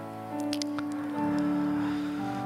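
Soft background music of sustained keyboard chords, held and changing slowly, with a few faint clicks just after half a second in.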